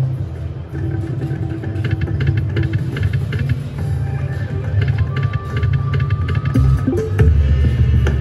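Ainsworth video slot machine playing its free-games bonus music, with a steady low beat, melodic chimes and short clicks as the reels spin and small wins are tallied.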